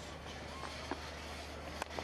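Low, steady stadium crowd background, then a single sharp crack of a cricket bat striking the ball near the end.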